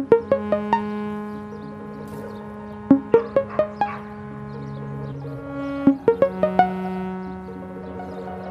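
Electronic synthesizer music: bursts of four to six short plucked notes about every three seconds over a held low synth note, which drops in pitch about five seconds in and comes back up a second later.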